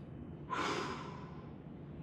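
A man's audible breath, a sigh-like exhale that starts suddenly about half a second in and fades away over about a second.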